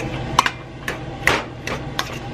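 Wire potato masher knocking against the side and bottom of a stainless steel pot while mashing cooked broccoli and cauliflower, about four strokes in two seconds.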